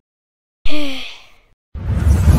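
A short voiced sigh with a slightly falling pitch, fading over about a second, then a loud noisy burst heavy in the bass near the end.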